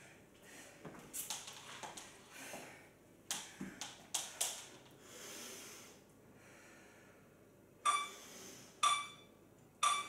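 Hard, noisy breathing while recovering between rounds. It is followed near the end by three short beeps about a second apart from an interval timer counting down to the next work interval.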